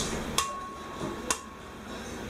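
Two sharp taps, about a second apart, as an egg is knocked to crack it over a glass blender jar; the first tap leaves a brief thin ring.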